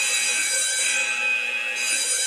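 Alarm siren of the Alfred security-camera app sounding from a smartphone at maximum volume: a steady, shrill electronic tone with many overtones.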